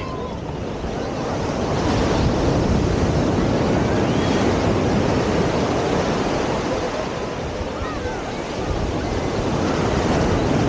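Ocean surf breaking and washing up the sand, with wind buffeting the microphone. The wash swells about two seconds in and again near the end.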